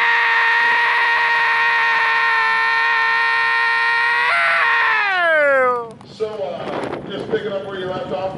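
A person's long, loud yell held on one pitch for about four seconds, then sliding down in pitch and dying away.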